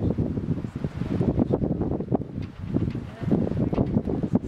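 Wind buffeting the microphone: a low, irregular, gusting rumble.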